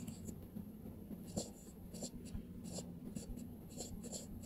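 Faint, irregular scratches and light taps of handwriting strokes on a tablet touchscreen, over a low steady hum.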